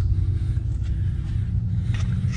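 Steady low hum with a faint hiss, the constant background of a workshop bay, with no distinct knocks or tools.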